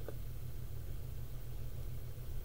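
A steady low mechanical hum, engine-like, with no other distinct sound.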